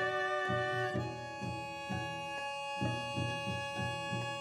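String quartet playing: violins and viola holding long bowed notes over a low pulse that repeats a few times a second.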